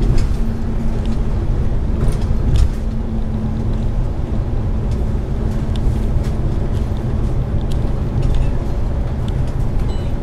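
Inside a moving double-decker bus: steady engine and road rumble with a drone that fades out about seven seconds in, and scattered light rattles and clicks from the bodywork.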